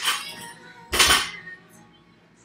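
A 185 lb barbell loaded with Rogue bumper plates dropped from the front rack onto a rubber gym floor: a clank right at the start, then the bar lands about a second in, the loudest sound, a heavy thud with a metallic rattle of plates and collars.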